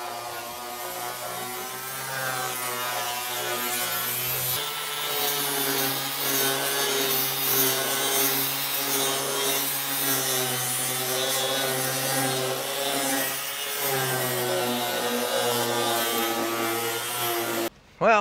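Electric angle grinder with a soft flap disc, sanding cured epoxy squeeze-out off a fibreglassed wooden hull. It makes a steady motor whine under a grinding rasp, and the pitch wavers slightly as the disc bears on the surface. The sound breaks briefly about four and a half seconds in.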